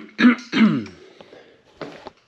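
A man coughing and clearing his throat: a few harsh bursts in the first second, the last one sliding down in pitch, then one short burst near the end.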